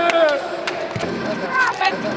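Men's voices calling out briefly and laughing in a large hall. A few short, sharp clicks are heard in the first second.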